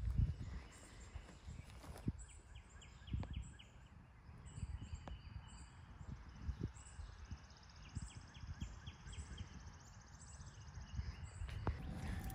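Quiet outdoor yard ambience: a low rumble, a few soft knocks as the person walks over grass, and two short runs of faint rapid chirping high in pitch, about 3 seconds in and again about 8 seconds in.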